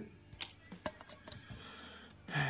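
Paper instruction leaflet and card being handled: a few faint separate ticks and light rustles, the clearest about half a second in.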